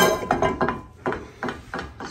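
A metal frying pan set down on a gas stove's cast-iron grates, clanking in a few short knocks and rattles.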